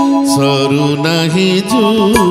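Male singer holding a long, steady note in an Odia devotional song over harmonium. Near the end the note breaks into a wavering, ornamented phrase as tabla strokes come back in.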